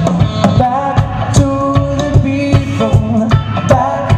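A live band playing a song: a steady drum-kit beat under held melody notes, with guitar and keyboard filling in.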